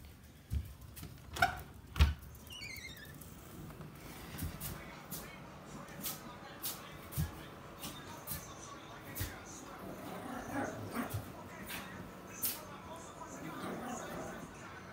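A small Yorkshire terrier scampering about, with scattered irregular clicks and taps and a short run of high squeaky chirps about two and a half seconds in.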